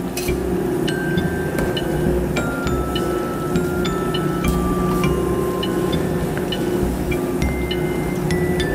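Background music: a slow melody of single held notes over a steady low hum.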